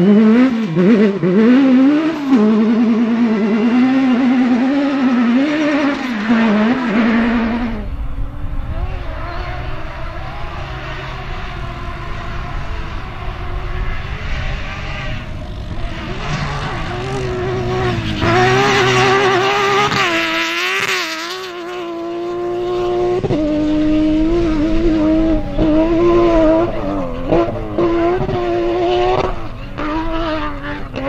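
Off-road rally cars' engines revving hard at competition speed. First a buggy's engine wavers up and down as it slides through mud. About eight seconds in, another rally car's engine takes over, climbing sharply in revs, dropping back, then pulling again with stepwise shifts near the end.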